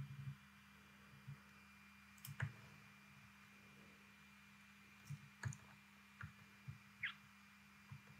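Near silence with a faint steady electrical hum, broken by soft computer-mouse clicks: one a couple of seconds in and a handful more in the second half.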